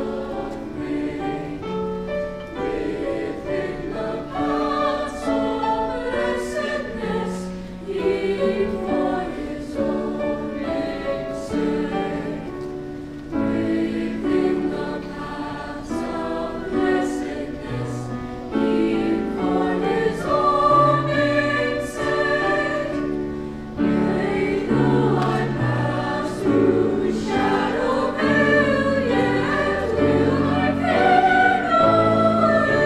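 A mixed choir of high school voices sings in parts, holding and moving chords together. The singing grows louder past the middle of the passage.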